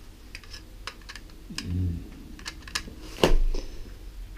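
Plastic bubble wrap and packing crinkling and crackling in irregular clicks as it is handled, with a sharper click about three seconds in.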